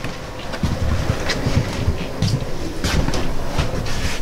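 Footsteps thudding on the floor of a travel trailer as people walk down its hallway: irregular low thumps about once or twice a second, with a few sharp clicks over a steady rumbling noise.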